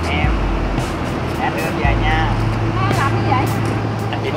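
A few people's voices in short, pitch-bending calls over a steady low hum and street noise.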